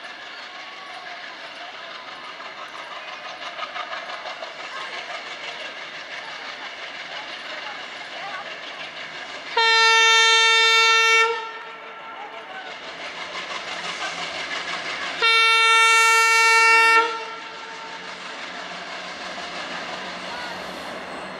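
WDG-3A diesel locomotive hauling a passenger train slowly towards the listener, its engine and wheel clatter growing gradually louder. Its horn sounds twice, two long steady blasts of nearly two seconds each, about six seconds apart, far louder than the train.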